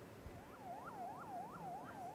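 Faint siren in a fast yelp, its pitch rising and falling about three times a second.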